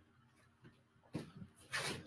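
Faint friction sounds of a martial artist moving through a step, punch and spinning back fist: a short scuff about a second in, then a longer, louder rubbing swish of uniform fabric and feet on the mat near the end.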